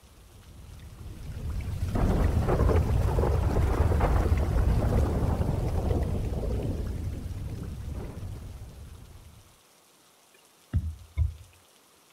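Thunderstorm sound effect: one long rolling rumble of thunder that swells in over about two seconds and fades away by about ten seconds in. Two brief soft low sounds follow near the end.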